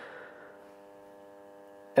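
EMCO V13 metal lathe running steadily, a faint even hum made of several steady tones, with a brief rush of noise dying away in the first half-second.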